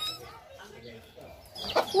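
A pause between lines of a high-pitched cartoon voice, leaving only faint background noise; near the end comes a brief click, and the squeaky voice starts again at the very end.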